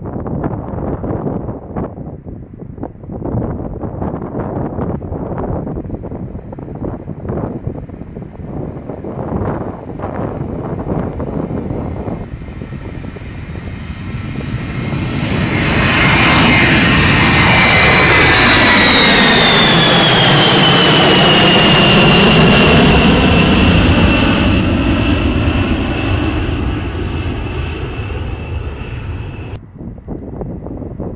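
B-52H Stratofortress's eight turbofan engines at takeoff power. A fainter jet roar swells to a loud roar as the bomber climbs overhead about halfway through, its high whine sliding down in pitch as it passes, then fading.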